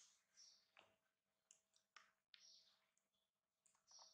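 Near silence with faint, scattered clicks and brief rustles: a baby monkey scrambling over a quilted bed cover and pawing a plastic toy doll.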